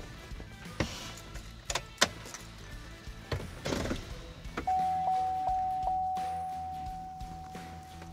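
Column gear shift lever of a Chevrolet Silverado clicking several times as it is pulled down through the gears, over background music. A little past halfway a steady high tone starts and fades slowly.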